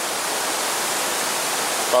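Steady rushing of a nearby mountain brook, an even hiss of moving water that does not change.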